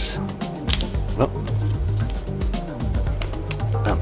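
Background music with a repeating bass line, over light clicks and rustles of a trading card and plastic card sleeve being handled.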